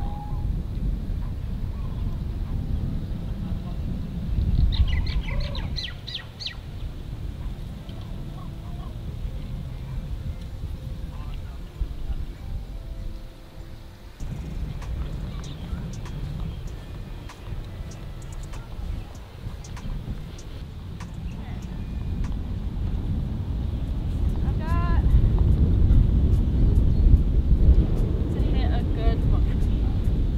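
Wind buffeting the microphone, gusting harder near the end, with short bird calls about five seconds in and twice more near the end.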